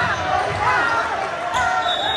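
A basketball bouncing on a hardwood gym court during play, with spectators' voices and shouts.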